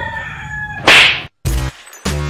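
A drawn-out pitched call in the background, cut off about a second in by a loud whoosh transition effect. After a brief silence, electronic outro music with a beat starts.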